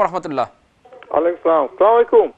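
Speech only: a voice fading out early on, a short pause, then a voice coming over a telephone line, thin and narrow-sounding.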